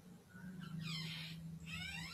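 Two faint, high-pitched, wavering squeaks, the first the longer, over a steady low hum.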